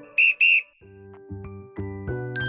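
Two short, loud whistle blasts in quick succession. About a second in, light background music with plucked notes starts again.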